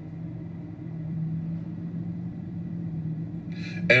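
Steady, even hum of a car heard inside its cabin, from the running vehicle or its ventilation, with no change in pitch.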